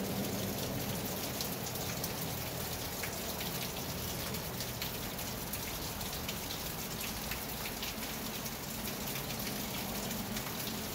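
Steady rain on the roof of a covered riding arena: an even hiss full of fine, scattered drop ticks, with a low steady hum underneath.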